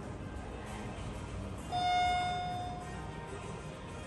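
Elevator hall-lantern arrival chime of a ThyssenKrupp Evolution 200 traction elevator: a single clear ding that fades over about a second, signalling that a car has arrived at the floor.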